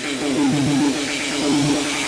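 Electronic dance music: a rapid repeating synth figure without bass, with a faint rising sweep in the high end.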